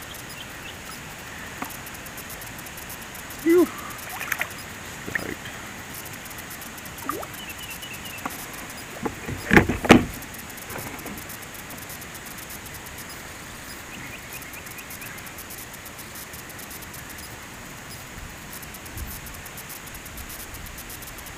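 A sooty grunter being landed beside a kayak: a loud splash and knock as the fish comes out of the water about ten seconds in, with a few smaller splashes and knocks earlier. A steady hiss runs underneath.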